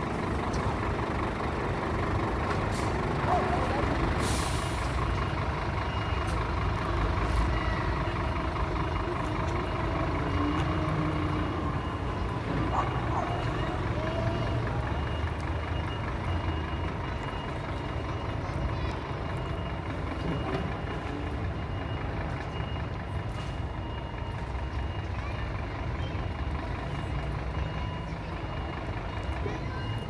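Scania P360 fire engine reversing slowly into its bay, its diesel engine running at low revs with the reversing alarm sounding. There is a short air-brake hiss about four seconds in.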